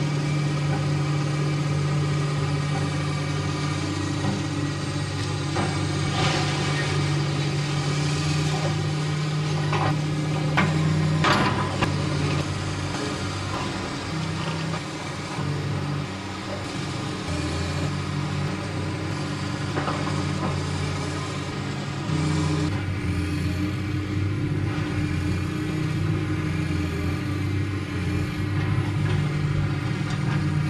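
Caterpillar hydraulic excavator's diesel engine running steadily under load as it demolishes a house, its note shifting as the machine works. Several crashes of the building breaking apart, the loudest about eleven seconds in.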